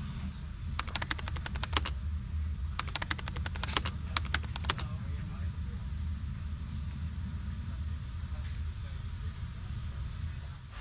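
Low rumble of an NS ICM 'Koploper' electric train running slowly into a station, heard inside the carriage. Two runs of rapid clicking stand out, one about a second in and a longer one from about three to five seconds in.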